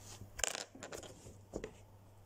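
A few light clicks and taps of small plastic toy figurines being handled and set down on a plastic playset.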